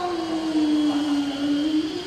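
A woman's voice in melodic Qur'anic recitation (tilawah), holding one long note that sinks slightly in pitch, then wavers in an ornament near the end.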